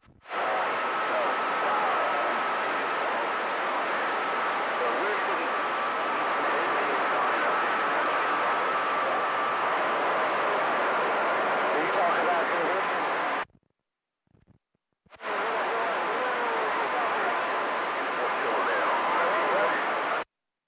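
CB radio receiver on channel 28 open on a weak long-distance skip signal: a steady rush of static with faint, garbled voices and a thin steady whistle buried in it. The squelch opens about half a second in and cuts the sound off for about a second and a half around two-thirds of the way through, then reopens. It closes again at the very end.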